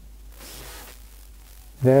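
A homemade two-transistor FM receiver being tuned between stations gives a low background noise, with a short burst of hiss a third of a second in. Near the end a loud, steady pitched sound comes in.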